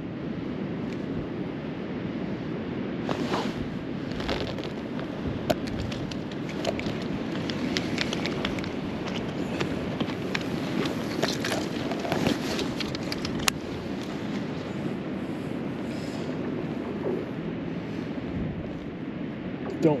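Steady wind noise over open ice, with scattered sharp clicks and crackles from about three seconds in until about fourteen seconds in.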